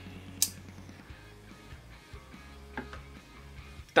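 A few light metallic clicks as the metal handle parts of a folding knife are separated during disassembly, the sharpest about half a second in and another at the very end, over quiet background music.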